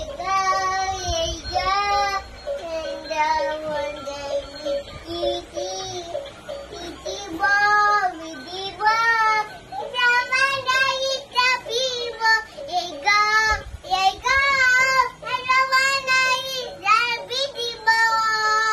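A child's high singing voice in phrases with music, the pitch wavering on held notes.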